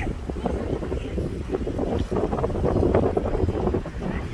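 Wind buffeting the phone's microphone as a steady low rumble, with indistinct background voices mixed in.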